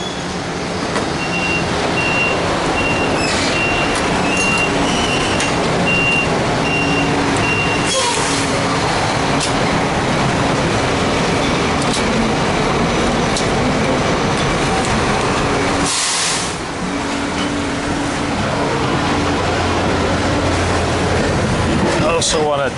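Diesel fuel rushing from a truck-stop pump nozzle into a semi truck's fuel tank: a loud, steady rush with brief breaks about a third and two thirds of the way in. A rapid series of high beeps sounds over the first several seconds.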